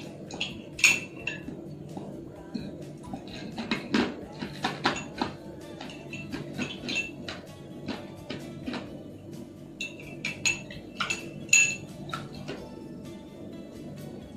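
Metal spoon scraping and clinking against the inside of a cut-glass goblet: a string of irregular short taps, each ringing briefly, loudest about a second in and again near the end. Steady background music runs underneath.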